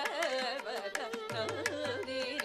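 Carnatic classical vocal, the singer's line sliding and ornamented in pitch and followed closely by violin, over a steady tanpura drone, with mridangam strokes keeping time.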